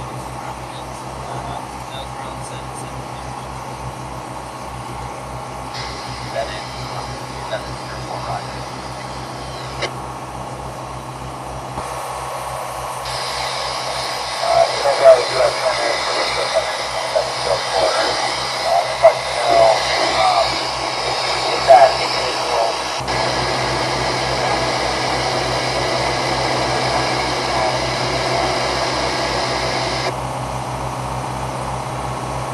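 A boat engine running steadily under way, a low, evenly pulsing hum. About twelve seconds in, the VHF marine radio opens with static and a garbled voice transmission from the Coast Guard aircraft, which cuts off suddenly at about twenty-three seconds.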